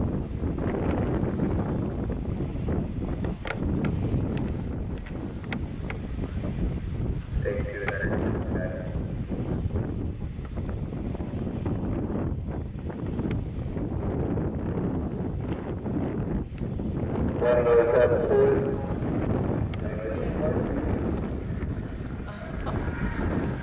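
Wind buffeting the microphone as a steady low rumble, with brief snatches of people's voices about eight seconds in and again, louder, near eighteen seconds. A faint high chirp repeats about once a second throughout.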